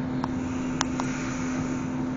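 A steady, even hum over a bed of noise, with a few short, sharp clicks scattered through it.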